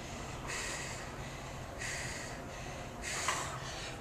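A woman breathing hard through the mouth from exertion between barbell power snatches, three breaths about a second and a half apart.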